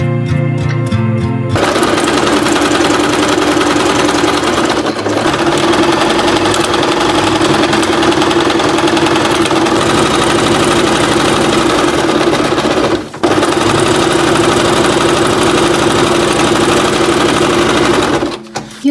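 Electric sewing machine stitching through a sheet of paper, running steadily with one brief stop about two-thirds of the way through. Strummed guitar music plays for the first second and a half, before the machine starts.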